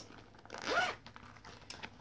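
Zip of a small metallic cosmetic pouch being pulled open in one sweep about half a second in, followed by a few light clicks.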